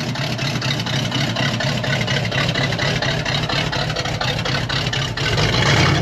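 Chevrolet Corvette C3's V8 engine at idle, a steady pulsing run as the car rolls slowly by, growing louder near the end as it comes closest; a magnificent idle.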